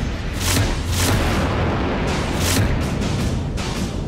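Dramatic background score for a TV serial: a low, sustained bed of music punctuated by heavy percussive hits, four of them, each with a bright crash on top.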